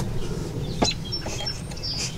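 A few short high bird chirps over a steady low rumble, with a single click a little under a second in.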